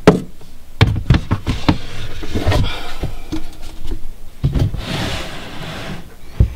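Sheets of newspaper substrate rustling and crinkling as they are pulled back by hand, with knocks and clicks of handling in the snake enclosure and a longer rustle about five seconds in.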